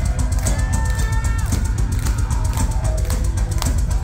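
Heavy metal band playing live: distorted electric guitars over drums and bass, dense and loud, with a held high note that drops away about a second and a half in.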